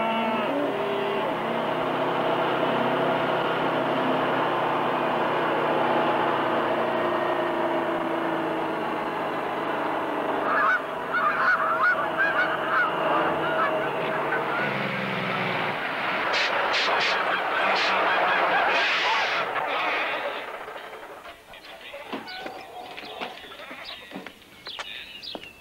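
Kenworth semi-truck's diesel engine running steadily, with geese honking loudly over it for a few seconds about halfway through. The engine note then drops away, followed by a few sharp clicks and a hiss.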